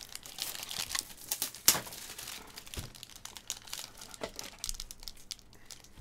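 Foil wrapper of an Upper Deck hockey card pack crinkling and crackling in the hands as it is worked at, in irregular sharp crackles, the loudest about a second and a half in. The pack is tough to open.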